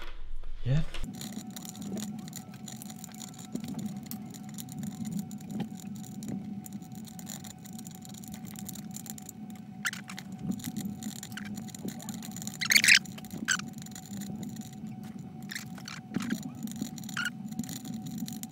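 Lock pick and tension wrench working inside the Lockly safe's laser-cut key lock: small metal clicks and scrapes, with a sharper clack about thirteen seconds in, over a faint steady tone.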